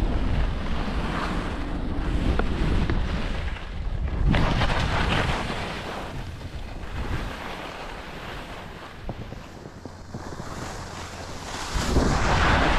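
Wind rushing over an action camera's microphone as a skier descends, mixed with the hiss and scrape of skis sliding over snow. It swells about four seconds in, eases off through the middle and builds again near the end.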